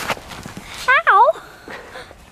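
A short, high-pitched cry about a second in that dips and then rises in pitch, with a few soft crunching steps in snow around it.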